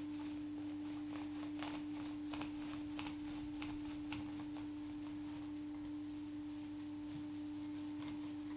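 Primer being rolled on with a short-fibre paint roller: soft strokes roughly every half-second, stopping about halfway through. A steady hum runs underneath and is the loudest thing.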